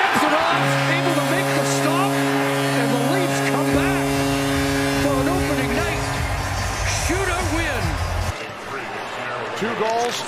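Arena goal horn sounding a steady multi-note chord for about six seconds over a cheering, whistling crowd, signalling the home team's shootout win. A deep low rumble from the arena sound system comes in midway and stops a couple of seconds after the horn.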